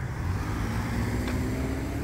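A Toyota RAV4 SUV driving slowly past close by: a steady low engine and tyre rumble, with a faint steady tone coming in about halfway through.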